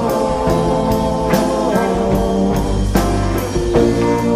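Live rock band playing an instrumental passage of a slow ballad: electric guitar over bass and drum kit, with drum hits about twice a second.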